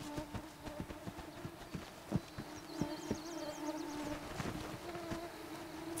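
A mosquito swarm buzzing in a steady hum, with irregular light knocks throughout.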